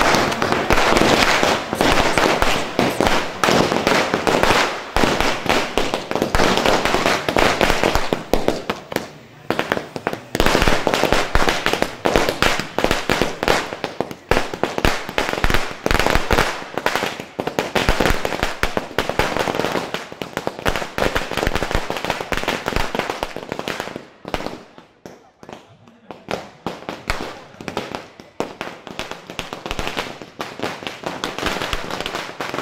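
Firecrackers going off in a fast, continuous run of sharp bangs. The bangs ease briefly about nine seconds in and thin out for a couple of seconds about two-thirds of the way through before picking up again.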